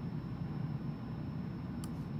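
Low, steady background room noise with a single faint click shortly before the end.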